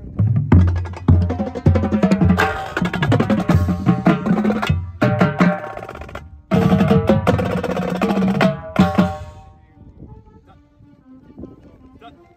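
Marching drumline playing Ludwig drums: bass drums strike an even beat, then from about two seconds in tenor drums and snares join in a dense, fast passage. It breaks off for a moment around six seconds, resumes, and stops about nine seconds in, leaving much fainter sound.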